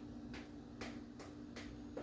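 Spatula scraping thick chocolate cake batter out of a clear mixing bowl into a baking pan, making faint clicks about every half second, over a steady low hum.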